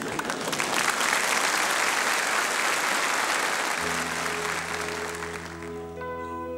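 Studio audience applauding. About four seconds in, a held low chord begins underneath as the applause fades: the instrumental intro of a song.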